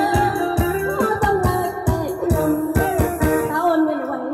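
A woman singing a Khmer song through a microphone over amplified dance music with a steady drum beat and guitar.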